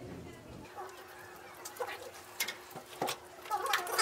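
Plastic candy wrappers crinkling in the hands, a scattering of short sharp crackles, with a few brief muffled voice sounds.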